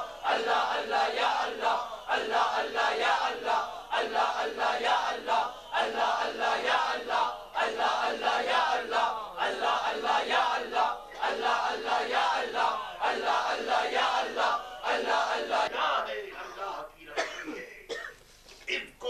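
A large group of men chanting loudly together in a regular pulsing rhythm, dying away in the last couple of seconds.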